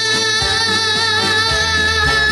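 A young girl singing a long held note with vibrato into a microphone, over instrumental accompaniment.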